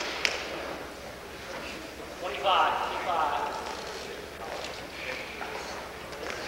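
Shouts from the gym during a wrestling bout, with one loud, drawn-out call about two seconds in and shorter calls later, over the hum of the hall. A sharp smack sounds about a quarter second in.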